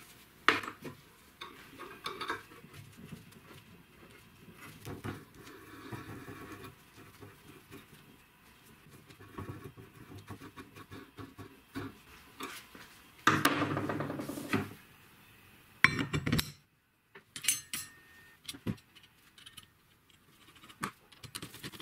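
Steel workshop parts handled and screwed together by hand: nuts and threaded fittings clinking and scraping against each other, metal on metal, in short irregular bursts. A louder stretch of rapid clicking comes about two-thirds of the way in.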